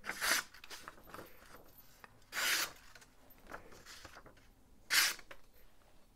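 A hammered-finish steel chef's knife slicing through a sheet of paper in three short strokes, about two and a half seconds apart. It passes through the paper easily, the sign of a really sharp out-of-the-box edge.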